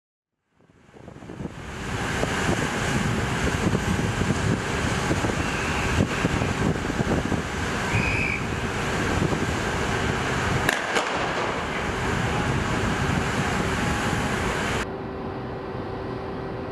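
Wind rushing and buffeting the microphone over the churning wash of sea water between two ships running side by side, with a faint steady machinery hum beneath. It fades in over the first two seconds and drops suddenly to the quieter hum shortly before the end.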